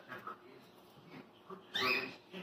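Small pet dogs playing and rolling on a tile floor. Faint play sounds, then one dog gives a short, loud vocal sound that rises in pitch near the end.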